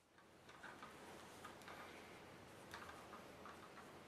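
Near silence, with faint, irregular small clicks and rustles of hands handling a plastic reel of marker tubing on its spooler stand.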